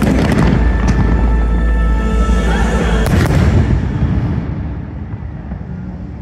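Fireworks launching and bursting, with sharp bangs at the start, about a second in and about three seconds in, over loud show music. The music and deep rumble fade away from about four seconds in.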